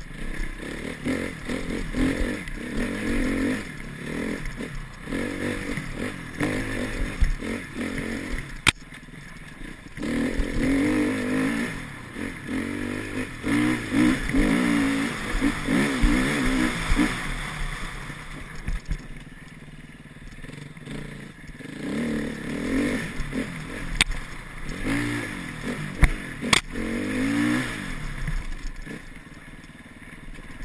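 Enduro dirt bike engine revving up and easing off again and again as the bike is ridden hard, heard from the rider's helmet. A few sharp knocks stand out, about nine seconds in and twice near the end.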